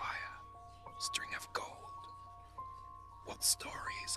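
Whispered speech over soft background music with long held notes.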